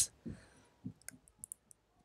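A few faint, short clicks close together about a second in, during a pause in speech.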